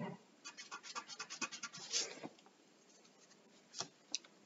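Pencil lead scratching on paper in a quick run of short strokes, faint, with a soft knock at the start and one more stroke near the end.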